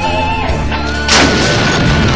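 A single artillery shot from a towed field howitzer about a second in: one sudden loud blast that trails off over the following second.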